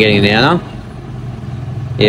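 Steady low engine hum of motor vehicles running in the background.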